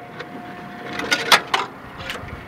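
Clicks and scraping as a part is worked loose and pulled out of the engine bay by hand, loudest about a second to a second and a half in.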